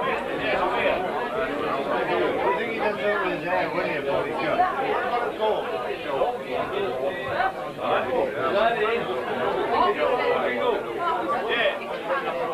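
Dense chatter of many people talking at once, overlapping voices with no single speaker standing out.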